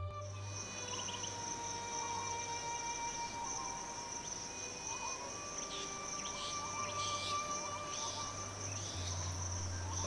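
Forest insects such as crickets singing in one steady, high-pitched drone. Fainter sustained tones with short warbling notes sit beneath it.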